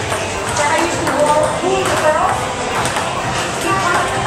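Table tennis ball clicking off paddles and the table during a rally, with people's voices over it.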